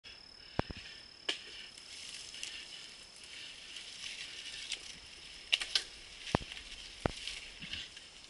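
Mountain bike clattering along a dirt trail, with half a dozen sharp knocks as it hits bumps and roots. Under it runs a steady, high-pitched insect drone.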